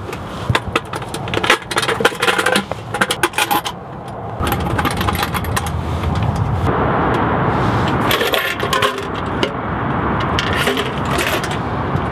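Metal clinking and clicking as a paint can's lid, bolt and chain are handled and fastened. From about four seconds in, a steady rushing noise runs under the clinks.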